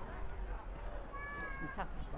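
A high-pitched, drawn-out cry held on one note for about half a second, falling away at the end, over a steady murmur of outdoor crowd noise.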